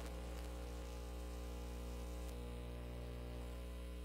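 Steady mains hum, a low electrical buzz made of many evenly spaced tones, from the microphone and sound system.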